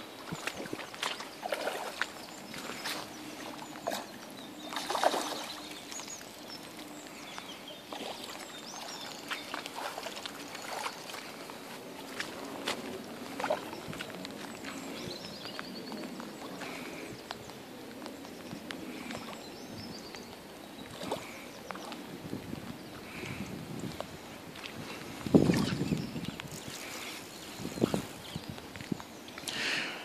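Hooked rainbow trout splashing and swirling at the surface as it is played on a fly rod, over light rain pattering on the water. The loudest splash comes about 25 seconds in, another about 5 seconds in.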